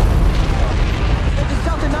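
A bomb explosion: a deep, drawn-out boom that hit just before and slowly fades, with a man's shout starting near the end.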